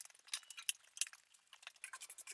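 Bristle hand brush sweeping dust and ash off the steel outside of an Oklahoma Joe's offset smoker: faint, short scratchy strokes, coming closer together near the end.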